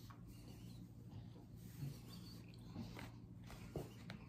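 Quiet room with a low steady hum, broken by a few faint rustles and soft taps as a cloth is handled and laid out on a table.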